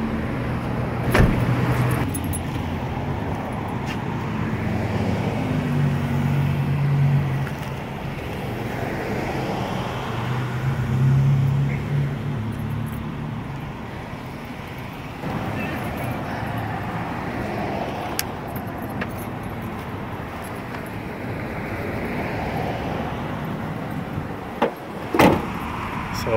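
Street traffic: cars passing, their engine hum swelling and fading twice. Over it come the rustle and clatter of camping gear being handled and loaded, with a sharp knock near the end.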